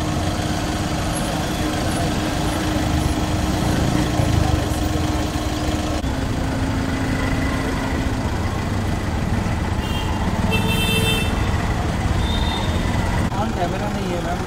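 Car engine idling steadily, with a crowd talking over it close by. A short high-pitched tone sounds about ten seconds in.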